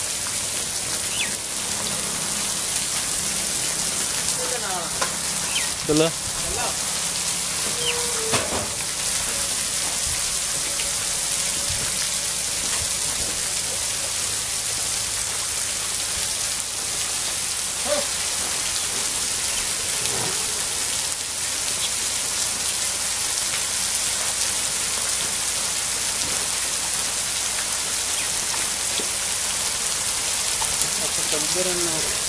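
Overhead sprinkler pipes spraying water onto a pen of water buffaloes and the wet concrete floor: a steady, even hiss of falling spray, with brief faint voices now and then.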